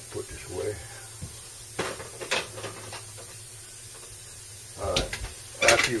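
A few light clicks and knocks of arrows being handled on a wooden workbench, over a low steady hum. A busier clatter of handling comes in near the end.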